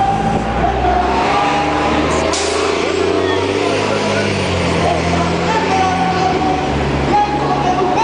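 City bus engine running as it passes in street traffic, with a short hiss about two seconds in, under the voices of a crowd.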